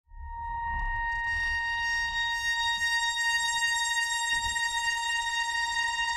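A high, steady electronic tone with a row of overtones, fading in right at the start and held unchanged throughout, over a faint low rumble: the opening drone of a pre-recorded backing track.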